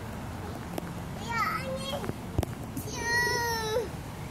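A toddler's high-pitched squeals and vocal sounds: a few short bending calls, then one longer high call near the end, with a single sharp knock a little past the middle.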